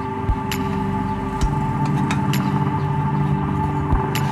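Background music with held tones. Over it come a few short metal clicks and knocks as a rod packs steel wool into a motorcycle muffler tip.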